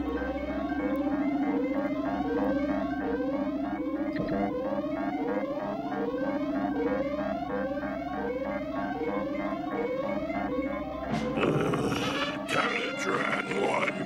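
Synthesized electronic cartoon score and effects: a rising sweep repeating about once every three-quarters of a second over a steady low drone. About eleven seconds in, it breaks into noisy crashes and clatter.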